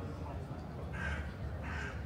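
A crow cawing twice, two short harsh calls about a second in and near the end, over the murmur of a strolling crowd.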